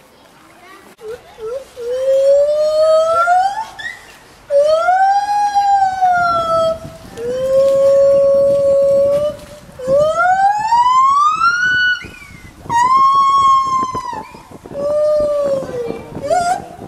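White-handed gibbon (lar gibbon) singing: a series of long whooping calls, each held a second or two and sliding up, arching over or falling in pitch, after a few short notes about a second in.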